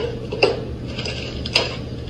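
Sharp knocks and clatter of kitchen items being handled at a counter, about one a second, over a steady low hum.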